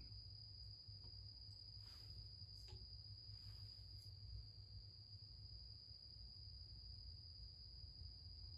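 Near silence: workshop room tone with a steady low hum and a faint, steady high-pitched whine, and a few faint clicks about two and three seconds in.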